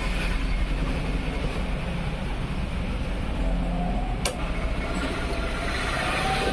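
Coil-winding machine humming steadily with a low drone, and a single sharp click about four seconds in.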